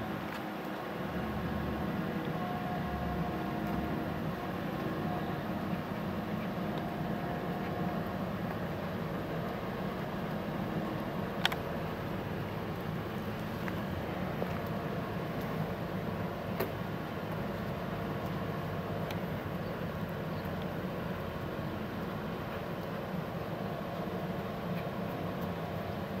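Steady outdoor background rumble with a low hum, with a few faint sharp clicks, the sharpest about eleven and a half seconds in.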